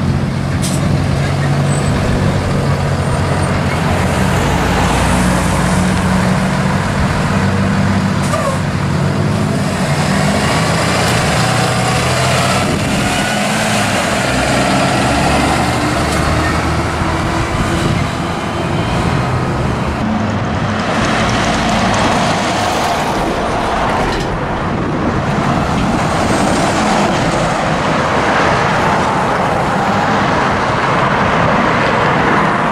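Blue Bird Vision school bus engine running as the bus drives close past and pulls away, followed by the sound of other road traffic.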